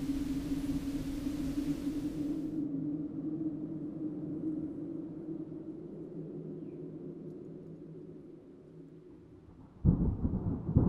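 Low, steady drone of an eerie background sound bed, slowly fading out, with a high hiss above it that cuts off about two and a half seconds in. At the very end a sudden loud rumble of thunder sets in.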